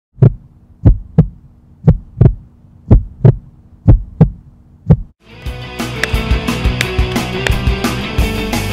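Heartbeat sound effect: paired low thumps, a lub-dub about once a second, for about five seconds. Rock music with drums then starts suddenly and runs on.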